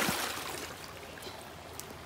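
A splash as a wading leg plunges through knee-deep creek water, fading over about half a second, then the steady rush of the flowing stream.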